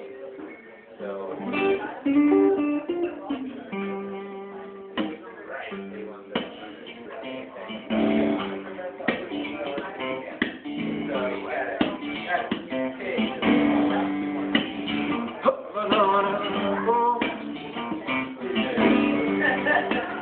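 Solo acoustic guitar, strummed and picked in a busy rhythm with sharp strokes across the strings: the instrumental opening of a live song, before the singing comes in.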